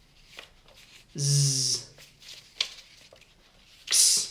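A man's voice saying single phonics letter sounds: one voiced, hissy sound about a second in and a short hiss near the end, with a few faint clicks of flashcards being handled in between.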